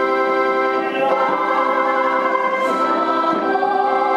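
A group of voices singing a hymn over sustained organ chords on a keyboard. The voices come in about a second in, over chords held steady underneath.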